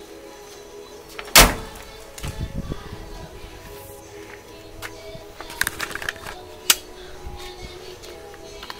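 A 1956 Cadillac Sedan DeVille's door swung shut against its new rubber weather-stripping with one loud thud about a second and a half in, followed later by a few light clicks, over steady background music.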